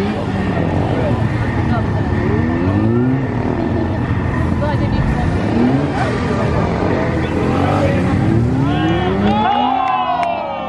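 Suzuki SV650S V-twin engine revving up and falling back in short repeated rises, each about a second long, as the bike is worked through tight turns. Near the end the revs climb higher and sharper.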